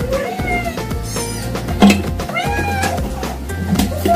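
A kitten meowing twice, each meow rising and falling in pitch, over background music. A sharp knock, the loudest sound, comes just before the second meow.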